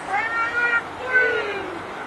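Two long, drawn-out high shouts from a rugby player at a scrum, the second falling in pitch.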